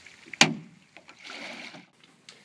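A single sharp knock about half a second in as the paddle and the small rowboat bump, followed near the end by a brief soft rushing sound.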